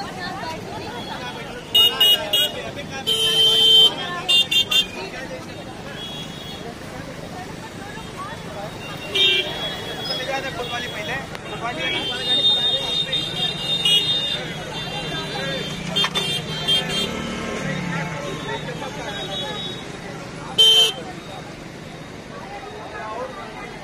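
Busy street noise with a crowd's voices and several short vehicle horn honks: a few toots about two to five seconds in, more in the middle, and one more near the end.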